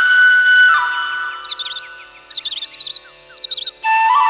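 Instrumental background music: a flute-like melody holds a note and fades about a second in, leaving quick repeated bird-like chirps over steady held tones, and the melody comes back right at the end.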